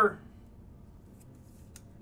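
A sleeved trading card is slid into a rigid plastic toploader: faint plastic-on-plastic scraping with a couple of light clicks about a second in and again near the end.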